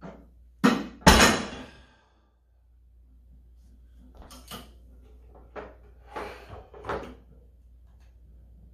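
Plate-loaded IronMind Little Big Horn and iron weight plates clanking: two loud metal impacts about half a second apart near the start, the second ringing on briefly. Softer knocks and scuffs of the implement being handled follow a few seconds later.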